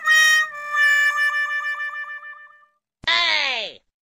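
Comedy sound effects added in editing: a held musical note wavers and fades out over the first two and a half seconds. About three seconds in comes a short cartoon swoop falling steeply in pitch.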